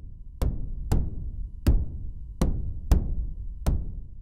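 Synthesized kick drum made from grey noise through a low pass gate, struck six times in an uneven pattern. Each hit is a big low thud with a little bright strike tone at the attack.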